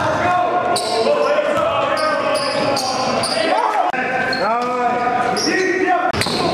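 Sounds of a basketball game in play: a basketball bouncing, sneakers squeaking on the gym floor in short rising-and-falling squeals, several of them together near the end, and players' voices.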